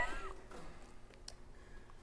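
A person's brief, high, pitch-bending vocal sound right at the start, then a hushed pause with only faint room tone and a couple of soft ticks.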